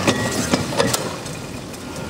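Steady rumble of idling vehicle engines in street noise, with three sharp clanks or knocks in the first second.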